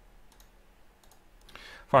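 A few faint, sharp clicks of a computer mouse over quiet room tone.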